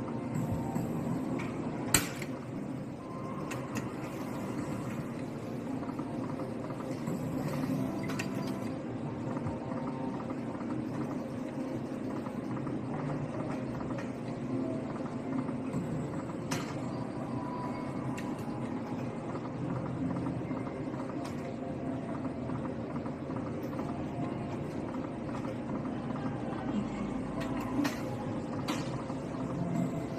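Rise of Ra video slot machine running its free spins: its reel and win sound effects over a steady gaming-hall din, with a sharp click about two seconds in.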